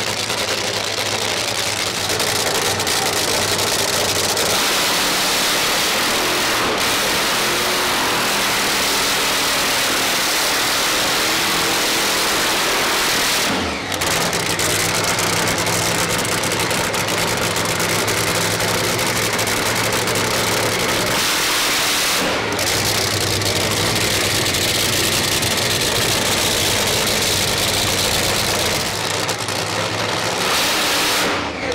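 Supercharged top fuel V8 burning nitromethane, running hard through a burnout while its tyres spin in heavy smoke. The sound breaks briefly twice, about 14 and 22 seconds in.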